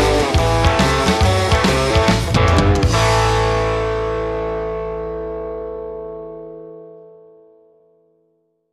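Rock song with distorted electric guitar and drums ending on a final chord about three seconds in, which rings on and slowly fades out.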